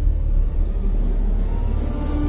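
A deep, steady rumble in the background soundtrack music, with a hiss that swells toward the end and held notes coming in near the end.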